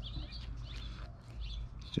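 Birds chirping faintly in the background, a few short high calls over a low steady outdoor rumble.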